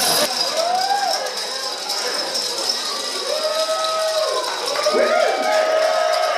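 Dominoes toppling in a continuous rattling clatter. From about three seconds in, several onlookers' voices call out in long, drawn-out cries over it.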